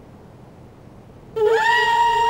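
A quiet stretch, then a suspense music cue comes in about a second and a half in: one sustained high, reedy note that slides upward and then holds steady.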